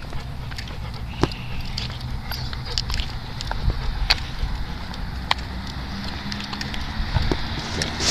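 Steady low rumble with scattered, irregular small clicks and crackles: handling and wind noise on a handheld camera microphone while moving along a concrete path.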